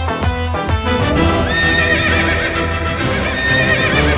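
Loud film soundtrack music with a horse's whinny mixed in: a wavering, high pitched cry that runs through the second half as the white horse rears.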